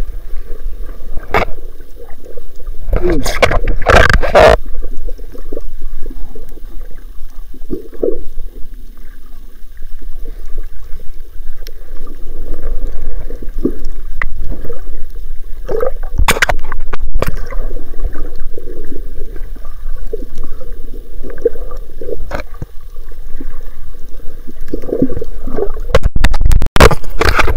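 Underwater water noise picked up by a submerged camera: muffled rushing and gurgling. There are a few sharp knocks, the loudest about three to four seconds in and again around sixteen seconds.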